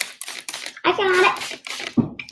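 A few quick squirts from a trigger mist spray bottle, wetting paint on a paper plate, at the start, then a voice speaking briefly.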